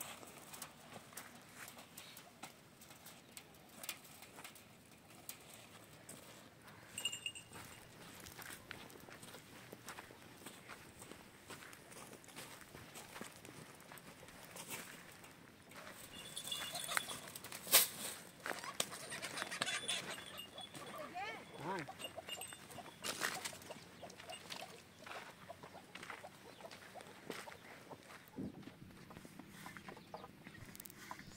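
Scattered knocks and rattles as chicken-wire mesh is handled and struck with a stone, with a few brief animal calls, busiest in the second half.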